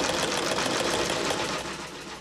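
Sewing machine stitching fabric, its needle running in a steady rapid rhythm that eases off near the end.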